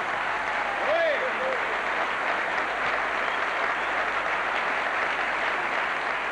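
Theatre audience applauding steadily at the end of a song, with a short shout from the crowd about a second in.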